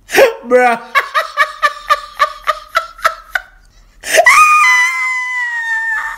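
A person's high-pitched staccato laugh, about four short "ha"s a second for a couple of seconds, then a long high squeal held for about two seconds, falling slightly in pitch.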